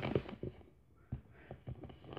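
Quiet room with a few faint, short clicks and taps scattered through it, and a near-silent moment just before the middle.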